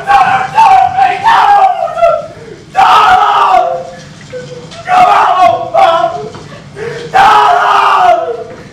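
A voice screaming in panic: loud, high-pitched cries one after another, about eight of them, each under a second long.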